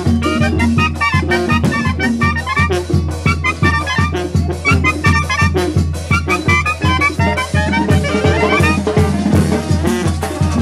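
Live Mexican banda playing: two clarinets carry a fast melody over brass, drums and cymbals keeping a steady beat, with a rising run of notes near the end.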